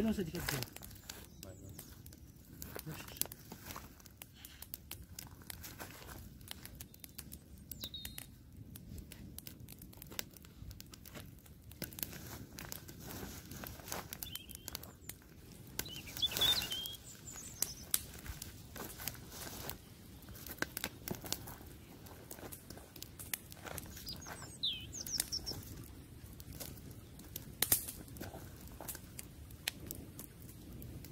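Campfire of dry sticks crackling, with irregular sharp pops and snaps throughout. A bird chirps briefly a few times, about eight seconds in, around sixteen seconds and again near twenty-five seconds.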